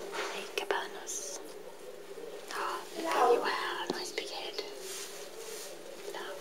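A person whispering softly, with light rustles and a few small clicks.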